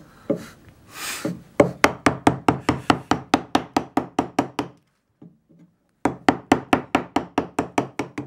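A carving chisel is tapped into linden wood in rapid light knocks, about five a second, in two runs with a short pause between. It is stabbing in along the drawn outline of a relief.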